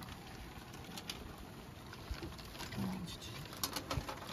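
Quiet outdoor ambience with a bird cooing in the background and a few light clicks near the end.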